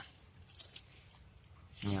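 Faint rustling of water-hyacinth stalks and leaves, with a little water, as a hand lifts a turtle out of a shallow pond.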